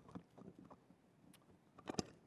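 Quiet room tone through a desk microphone in a pause in speech, with a few faint clicks and a sharper mouth click or breath near the end.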